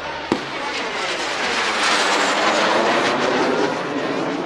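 An Alpha Jet flying overhead, the rushing noise of its two Larzac turbofans with a sweeping, shifting hiss, swelling to its loudest about two seconds in. A short sharp click just after the start.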